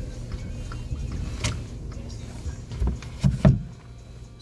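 Low, steady rumble inside a car's cabin, with a sharp click about a second and a half in and a few heavy low thumps near the end.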